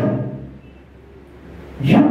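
A man's voice through a microphone: a drawn-out word fading away in the first half second, a pause over a low steady hum, then his voice coming in loudly again near the end on a held, sung-like note.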